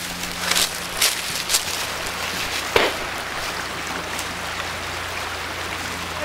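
Handling noise from a moving camera: a few short knocks and rustles over a steady hiss and a low steady hum.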